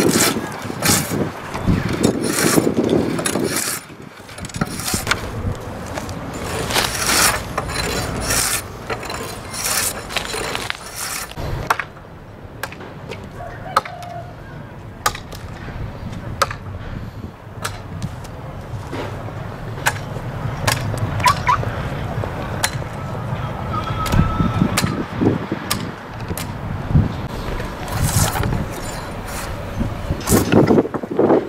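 Bark being stripped from freshly cut poplar poles with a flat-bladed hand tool and by hand: repeated irregular scraping and tearing strokes against the wood. The strokes come thick for the first dozen seconds, ease off for a few, then pick up again.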